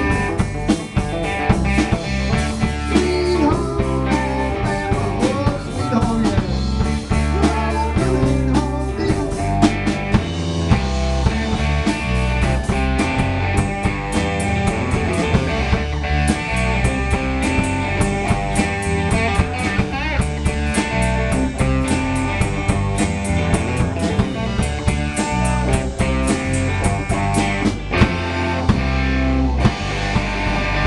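Live rock band playing an instrumental, blues-rock passage with no vocals: electric guitars and electric bass over a Premier drum kit keeping a steady beat.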